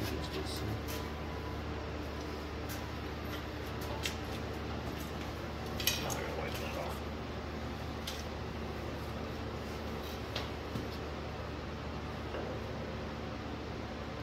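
Scattered light metallic clinks and knocks as a hydraulic lift assist cylinder and hand tools are handled against a tractor's 3-point hitch, the sharpest knock about six seconds in. A steady low hum runs underneath.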